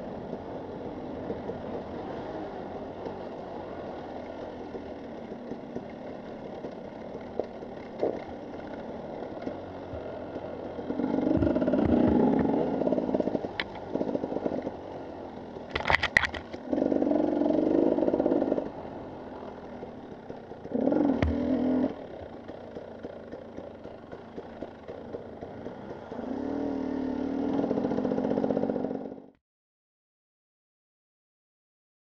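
Husqvarna TE 300 two-stroke enduro motorcycle running under the rider, with several louder surges of throttle lasting a second or two each and a sharp clack about halfway through. The sound cuts off suddenly just before the end.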